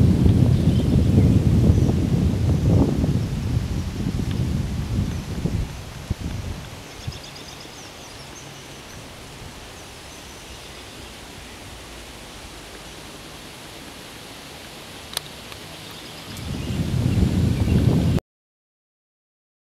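A low rumbling noise swells in suddenly, fades over about six seconds into a steady faint hiss, then swells again near the end and cuts off abruptly. A single sharp click comes near the end of the hiss.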